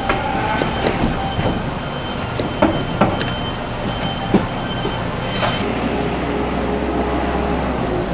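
Claw machine in play: a steady mechanical din with scattered clicks as the claw is moved and swung, and a motor hum that sets in about five and a half seconds in and stops near the end.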